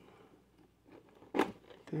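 One short crackle of a cardboard-and-plastic toy window box being handled and turned in the hand, about a second and a half in.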